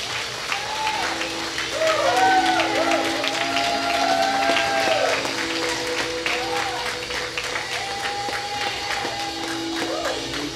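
A church congregation and worship team clapping and calling out a shout of praise, with voices singing out freely above a sustained keyboard chord.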